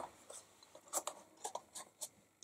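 A few faint taps and rustles of hands handling a folded paper box and picking up a ribbon from a tabletop.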